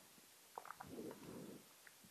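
Near silence: room tone with a few faint small clicks and a soft low sound about a second in.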